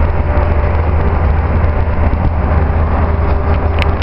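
Steady low vehicle rumble, with a sharp click just before the end.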